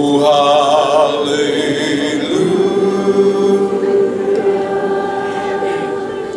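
Congregation singing a slow worship song, many voices holding long sustained notes, with a wavering vibrato in the first second.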